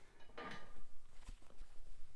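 Faint rustle of a hoodie's fabric being handled and held up, with a soft swish about half a second in and a light click a little later.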